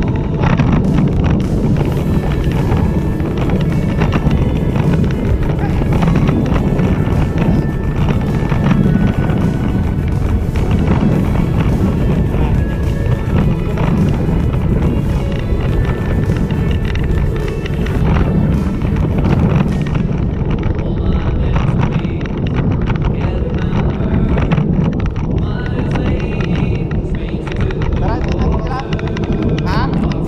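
A song with singing over a steady accompaniment, playing throughout.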